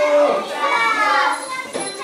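A group of young children's voices in a room, chattering and calling out together. The loudness dips in the second half.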